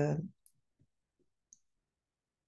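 A woman's spoken word trails off, then near silence broken by two faint, sharp clicks about half a second and a second and a half in.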